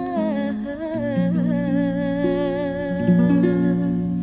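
Sholawat, a devotional song praising the Prophet: one voice sings a slow, wavering, ornamented melody over sustained accompaniment notes that shift about once a second.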